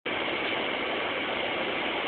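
Steady noise inside a bus cabin, the bus running.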